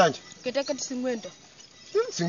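Speech only: a voice talking briefly in the first half, with no other distinct sound.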